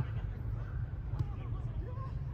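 Faint, scattered voices of soccer players calling out across the pitch, over a steady low rumble, with one sharp knock about a second in.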